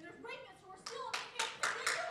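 An audience starts clapping about a second in, a few separate claps quickly thickening into applause, after a brief stretch of voice.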